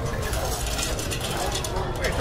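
Chunks of a large catla being cut on an upright blade, giving a rapid, ratchet-like run of fine crunchy clicks through scaly skin and flesh.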